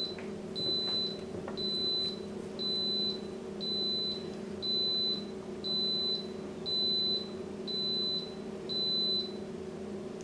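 Instant Pot Duo Plus pressure cooker beeping to signal that its pressure-cooking cycle has finished: a series of short, high electronic beeps, about one a second, over a steady low hum.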